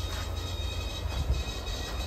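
Semi-truck diesel engine running steadily: a low, even rumble with a faint hiss over it.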